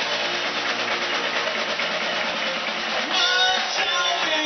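Live rock band playing, led by a strummed electric guitar, loud and dense throughout. About three seconds in, a clear pitched line rises out of the mix.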